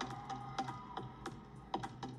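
A scatter of sharp, unevenly spaced clicks, roughly five or six a second, over a faint, steady music bed.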